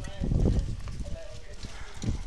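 Footsteps of a group of men walking on a dirt road, with indistinct men's voices calling out and a low rumble about half a second in.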